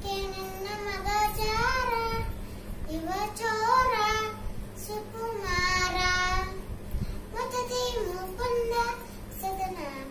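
A young girl singing a Kannada Dasa Sahitya devotional song solo, in short melodic phrases with ornamented, wavering pitch. She holds one long note near the middle.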